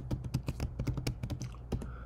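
Computer keyboard typing: a quick run of keystrokes.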